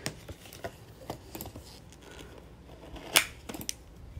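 Nail-stamping tools clicking and tapping: a plastic scraper card and a clear stamper knocking against a metal stamping plate, a string of small separate clicks with one louder click about three seconds in.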